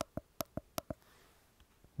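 Keys of a SwissMicros DM42 calculator pressed close to the microphone: about five sharp clicks in quick succession in the first second, then a couple of much fainter ticks near the end.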